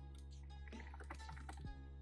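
Typing on a computer keyboard: a quick run of faint keystroke clicks.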